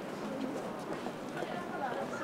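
City sidewalk ambience: snatches of passers-by talking over steady street background noise.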